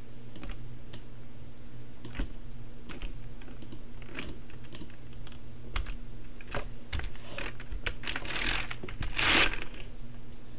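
Irregular clicks of a computer keyboard and mouse at a desk, over a low steady hum, with a short louder rush of noise about nine seconds in.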